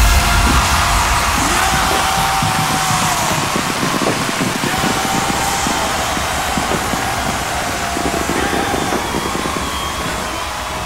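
Electronic dance music with heavy bass breaks off, leaving a big festival crowd cheering over a lingering synth tone. The sound slowly fades.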